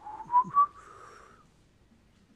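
A person whistling a short rising phrase, two quick notes within the first second, then fading out.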